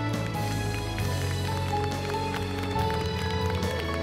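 Music with held, sustained notes, with scattered hand-clapping under it.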